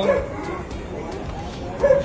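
A dog yipping briefly, once just after the start and once near the end, over background music with a quick ticking beat.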